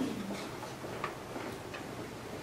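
Footsteps of a person walking briskly across a hard lecture-hall floor: about three light taps, roughly two-thirds of a second apart, over low room noise.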